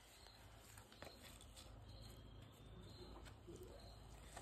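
Near silence: faint night-time outdoor ambience with a soft, repeating high insect chirp and a few faint clicks or scuffs.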